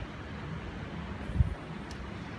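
Wind blowing across a phone's microphone, a steady low rumbling noise, with one short low thump about one and a half seconds in.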